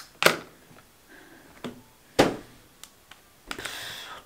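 A few sharp clicks and knocks of makeup items being handled while an eyeshadow palette compact is picked up, the loudest about two seconds in, followed by a brief rustle near the end.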